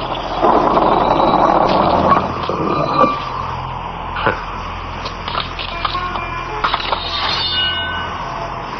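Film soundtrack: background music over a low held drone, with a rush of noise in the first couple of seconds and a few sharp knocks in the middle.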